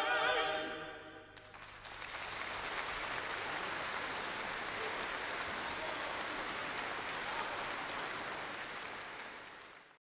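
A male choir's final held chord dies away into the hall's reverberation, and about a second and a half in an audience breaks into steady applause, which fades out near the end.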